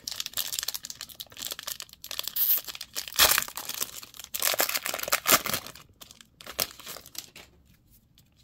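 Foil booster pack wrapper being torn open and crinkled by hand, with sharp crackling rips during the first half. It quietens after about six seconds to a few light clicks as the cards are handled.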